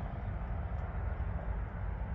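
A steady low rumble with a faint hiss and no distinct event.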